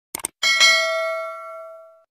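A short double click, then a bright bell chime about half a second in that rings out and fades over about a second and a half. It is the stock notification-bell sound effect of a subscribe-button animation.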